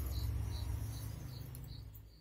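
A cricket chirping in short, evenly spaced high pulses, about three a second, over a low hum.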